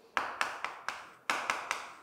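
Chalk writing on a chalkboard: a quick, uneven series of sharp taps, each followed by a short scrape, as characters are written stroke by stroke.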